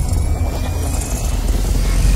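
Cinematic intro sound effect: a loud, deep, steady low drone with a faint tone slowly rising above it.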